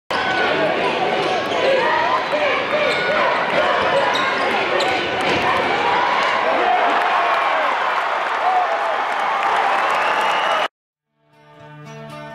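Basketball game sound in an arena, with a ball bouncing amid loud crowd noise and voices, cutting off suddenly about two thirds of the way through the last second or so. After a brief silence, soft plucked-string music fades in near the end.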